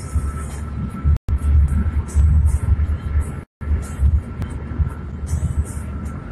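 Low road and engine rumble of a moving car, heard from inside the cabin through a phone microphone. The audio cuts out completely twice, briefly.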